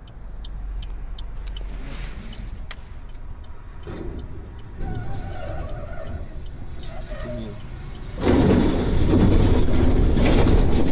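Road and rain noise inside a moving car on a wet highway, with faint voices in the cabin. About eight seconds in, a sudden loud rushing rumble as a semi-trailer slides past close alongside the car.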